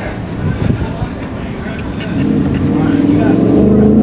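Car engine running at a drive-thru window, rising to a louder, steady note about halfway through as the car pulls forward.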